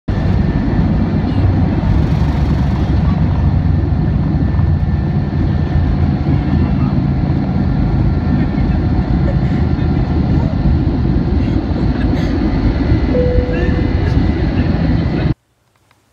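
Airliner engines at takeoff power heard from inside the cabin: a loud, steady rumble as the plane rolls down the runway and climbs away. It cuts off suddenly near the end.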